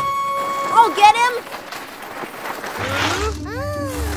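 Cartoon sound effects of a sled sliding over snow and ice: a held whistle-like tone and a short vocal exclamation, then a hissing slide lasting about two seconds. Low background music comes in near the end.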